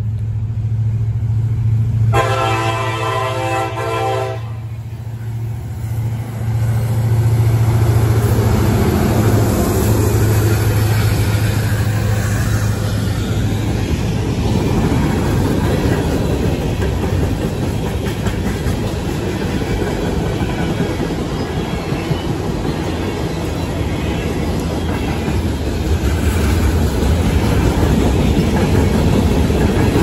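Diesel freight train at a grade crossing: the lead locomotive sounds its horn in one blast about two seconds in, lasting about two seconds, over the low drone of its engine. The locomotive then passes, and a string of covered hopper cars rolls by close, with steady wheel rumble and clatter on the rails.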